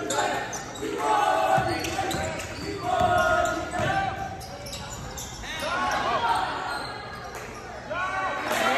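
Basketball game play on a gym's hardwood court: the ball bouncing and sneakers giving short, repeated squeaks, echoing in the large hall.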